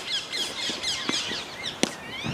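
Birds chirping over and over in short, quick notes; a soft tap about a second in, then near the end a single sharp crack of a tennis racket striking the ball on a backhand.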